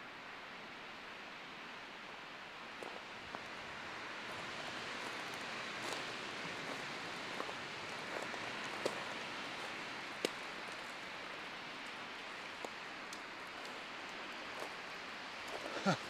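Wind blowing steadily through a conifer forest, an even rushing of the trees that swells a little in the middle, with a few faint scattered ticks and snaps.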